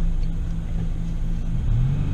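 Car engine running, with a steady low rumble heard from inside the cabin; the engine's hum drops to a lower pitch near the end.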